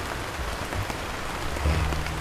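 Steady hiss-like background noise in a pause between speech, even across all pitches, with no distinct events in it.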